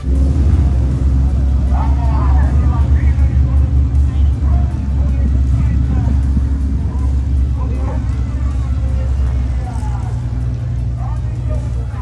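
Aircraft engine running with a steady low drone that pulses in the first few seconds, with people's voices faintly behind it.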